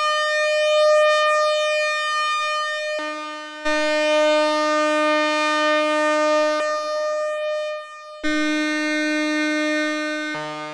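Monophonic analogue synth string patch holding one note: two sawtooth oscillators on an AJH Synth modular, band-pass filtered. About three seconds in, one oscillator is switched down an octave, adding a lower layer. It comes back up to unison a little after six seconds and drops an octave again about eight seconds in.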